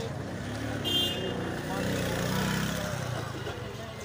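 Street babble of a crowd of pedestrians, with a car's engine passing close by and swelling over a couple of seconds. A brief high-pitched sound about a second in.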